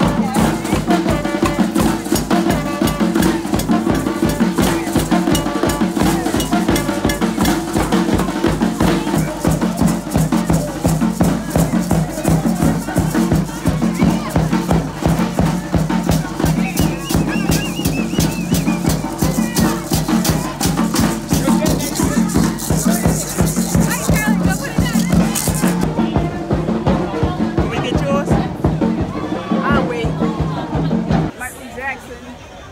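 A live street band playing upbeat Caribbean dance music. A barrel drum, timbales and rattling hand percussion keep a fast, steady beat, with a trombone playing over it.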